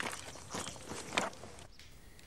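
A few footsteps, roughly half a second apart.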